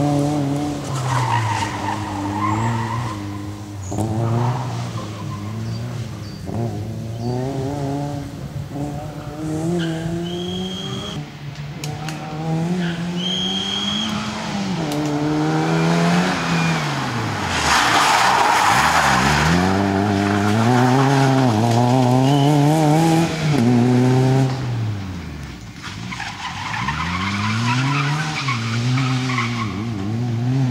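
Fiat Cinquecento rally car's small engine revving hard and falling away again and again through gear changes and lifts for the corners. Brief high tyre squeals come in the first half, and a burst of skidding noise comes about two thirds through.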